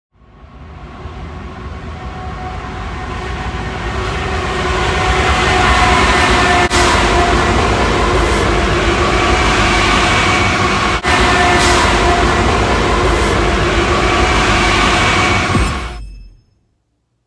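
Union Pacific diesel freight locomotive passing close by. Its engine and wheels on the rails swell over the first few seconds into a loud, steady rumble with a few held tones. The sound dips twice for an instant and cuts off suddenly at the end.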